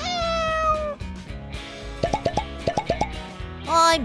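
A cat meow sound effect falling in pitch, over light background music, followed about two seconds in by a quick run of about eight short rising plop sound effects, and another short pitched call near the end.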